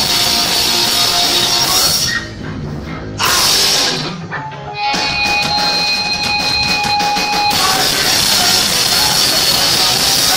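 Hardcore punk band playing live: loud distorted guitars and drum kit. There are two short drops in the sound in the first half. About halfway through, a high ringing tone is held for a couple of seconds over rapid, evenly spaced drum hits.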